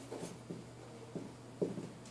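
Dry-erase marker writing on a whiteboard: a series of short, separate strokes, about six in two seconds.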